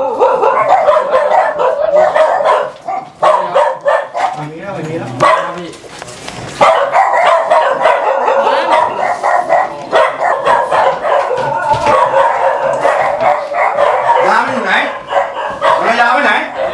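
A dog barking over and over, mixed with several people talking at once, with brief lulls about three and six seconds in.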